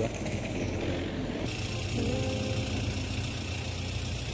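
Town street ambience with a car engine running nearby, a steady low hum under a hiss of background noise.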